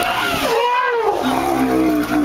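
Asian elephants calling loudly as two of them fight: a high squealing call near the start, then a long roar that slides down in pitch.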